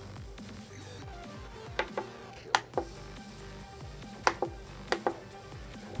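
Quiet electronic background music, over which about eight sharp clicks fall in two clusters, a few seconds apart. The clicks come from the digital-control knob on a KORAD KD3005D DC power supply as it is turned to step the voltage down.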